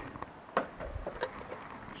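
Faint handling sounds of a plastic outdoor outlet enclosure and its cardboard box, with two light clicks, one about half a second in and one a little past a second.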